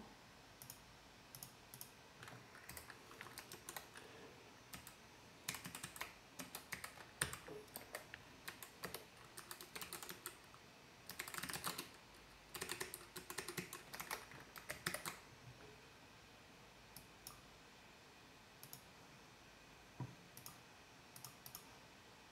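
Faint typing on a computer keyboard, with bursts of keystrokes over roughly the first fifteen seconds, then only a few scattered clicks.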